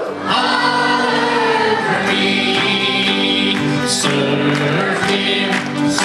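Youth choir singing a gospel song.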